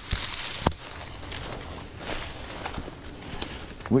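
Dry pampas grass stalks rustling and brushing close by, with a single bump under a second in, then quieter footsteps and rustling through grass.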